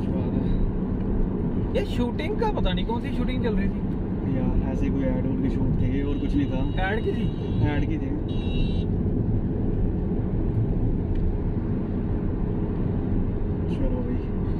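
Steady road and engine rumble heard inside the cabin of a moving car, with bits of low conversation in the middle of the stretch.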